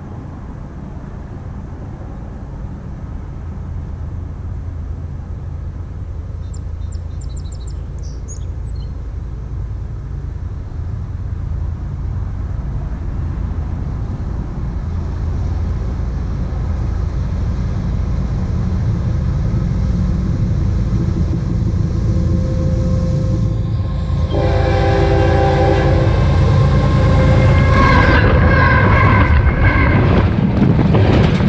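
Approaching freight train's low rumble building steadily louder, heard from between the rails. In the last few seconds the lead locomotive, a Norfolk Southern GE ES44AC, sounds its horn as it rolls up over the track.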